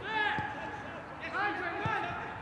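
Footballers' shouted calls on the pitch, one right at the start and another about a second and a half in, with the ball kicked twice in open play.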